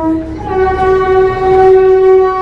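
Narrow-gauge train's horn sounding one long, loud, steady note; its pitch steps up slightly about half a second in.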